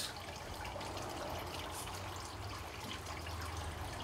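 Steady low-level background noise: an even hiss with a faint low hum underneath, and no distinct event.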